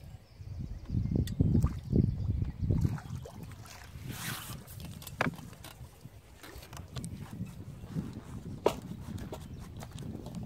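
Water splashing as a small hooked carp is played on the pole and drawn into the landing net. Low rumbling thumps come in the first three seconds, a brief splash about four seconds in, and a couple of sharp clicks after that.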